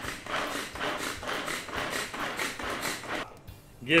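Manual pull-cord vegetable chopper worked in quick repeated pulls, about four a second, its blades whirring through chunks of onion. The pulls stop a little after three seconds in.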